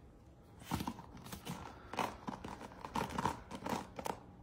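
A hairbrush's bristles rasping as hair is pulled out of them: a run of short, scratchy strokes that begins just under a second in.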